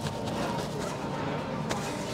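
Steady background hum of a dining area, with faint distant chatter and one sharp click near the end.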